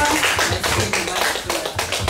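A congregation clapping in a fairly even rhythm of about four to five claps a second.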